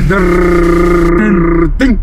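A man's long, drawn-out hum at a held pitch, stepping slightly lower about a second in and stopping shortly before the end, followed by a brief spoken syllable.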